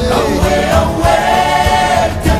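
A song sung by a chorus of voices, which hold one long note through the second half, over a steady low beat.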